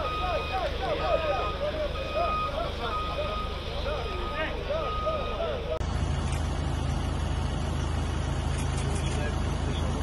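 A vehicle's reversing beeper sounding a steady repeated beep, a little more than one a second, over people's voices. About six seconds in, the sound cuts to a steady low rumble like an engine idling.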